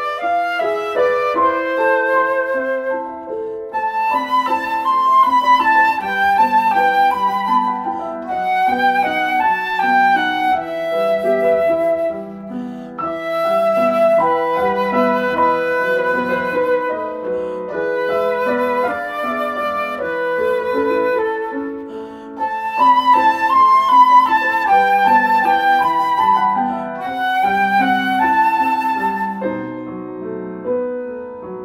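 Flute and piano playing a light, lyrical miniature. The piano plays alone for the first few seconds, then the flute comes in with the melody over the piano accompaniment, in short phrases with brief breaths between them.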